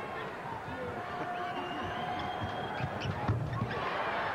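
Arena crowd noise from a live college basketball game, with a basketball bouncing on the hardwood court and thin squeaks from the play. A loud low thump comes a little after three seconds in.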